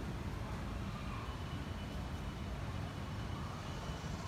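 Steady low rumble of outdoor urban background noise, even throughout, with a few faint thin tones above it.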